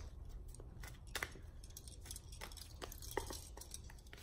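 Tarot cards being shuffled and handled: soft, irregular clicks and snaps of card stock, about seven in all, over a faint steady low hum.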